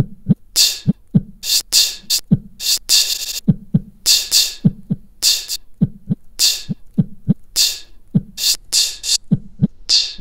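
Looped beatbox percussion playing back from a looper app: low mouth-kick thumps alternating with hissy snare and hi-hat sounds in a steady beat. There is a brief rapid stutter about three seconds in, typical of the beat repeat retriggering a short slice of the loop.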